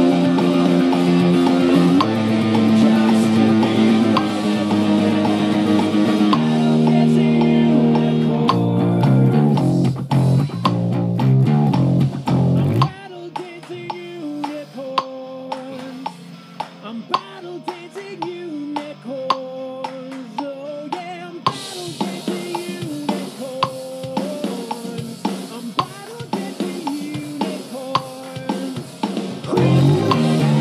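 Rock band music with an electric bass guitar line and drum kit. About 13 s in, it drops to a much quieter, sparse passage of drums and a lighter melody with no deep bass notes. The full band with bass comes back right at the end.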